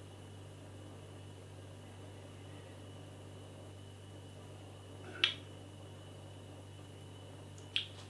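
A man tasting a mouthful of stout: a short, sharp smack of the lips about five seconds in and a fainter one near the end, over quiet room tone with a low steady hum.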